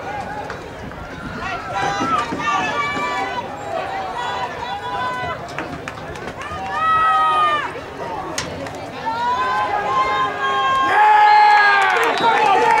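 Spectators and sideline players shouting and cheering during a football play, many voices overlapping, with two long yells: one about halfway through and a louder one near the end as the play ends in a tackle.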